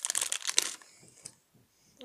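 Plastic sweets bag (Sour Patch Blue Raspberry) crinkling as a hand rummages in it for a sweet. The crinkling stops a little under a second in.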